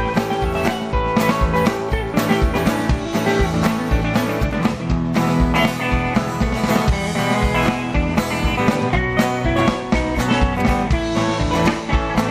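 Live country-rock band playing an instrumental passage with no singing: electric guitar lead over a drum kit beat, bass guitar and strummed acoustic guitar.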